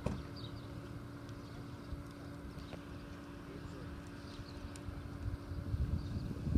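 Outdoor wind buffeting the microphone as an uneven low rumble over a steady faint hum, with a few faint high chirps.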